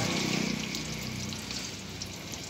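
Puris frying in hot oil in a pan, the oil sizzling and bubbling steadily with a fine crackle.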